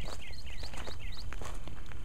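Footsteps on gravel as a person walks off, with a bird giving a quick series of short chirps, alternating between two pitches, that stops about a second in.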